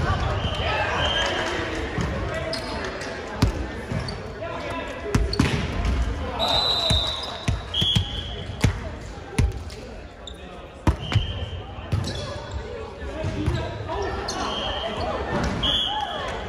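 Volleyball play on a hardwood gym court: sharp hits of the ball and several short, high sneaker squeaks, with players' voices and calls echoing in the large hall.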